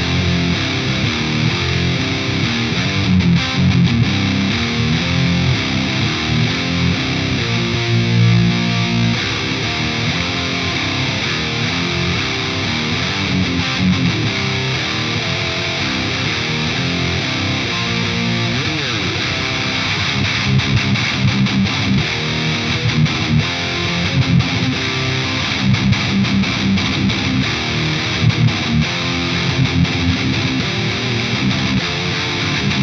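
High-gain electric guitar riffing in drop C tuning: a PRS DGT played through a Synergy DRECT preamp module, which is modelled on the Mesa/Boogie Dual Rectifier, boosted by a Boss SD-1 Super Overdrive. There is a sliding note a little past halfway.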